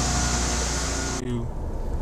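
Steady mechanical hiss and hum of background noise with a few faint steady tones. The hiss cuts off abruptly just over a second in, leaving a lower rumble.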